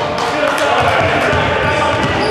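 Basketball being dribbled on a hardwood gym floor, with repeated low thumps, under players' voices calling out in an echoing gymnasium.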